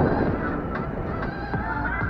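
Electric scooter rolling over pavement: low road rumble with scattered small knocks from the wheels, under a high wavering tone.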